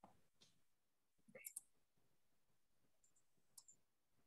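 Near silence with a few faint clicks, a cluster about a second and a half in and another near the end.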